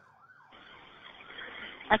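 Emergency siren heard faintly from inside a moving patrol car, under a steady, slowly building noise from the car's cabin.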